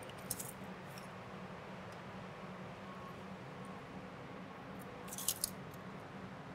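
Faint handling noise over a low, steady room hum, with a short metallic rattle about five seconds in as a tape measure's blade is pulled out and laid across the table.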